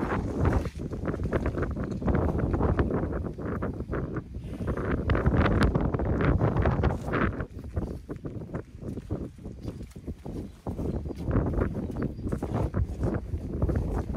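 Elephants moving and jostling at close range: a dense, irregular run of scuffs, knocks and low animal noises.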